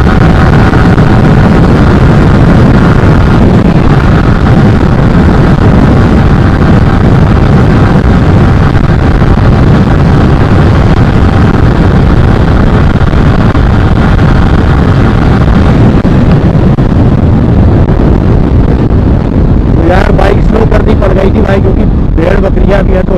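Heavy wind rushing over the microphone on a Yamaha R15 V3 at about 120 km/h, with the bike's 155 cc single-cylinder engine holding a steady note under it. The engine note fades in the last few seconds as the bike slows, and a man starts talking near the end.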